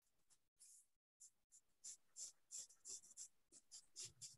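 Faint pencil strokes on sketching paper: short scratchy strokes, about three a second, starting about two seconds in.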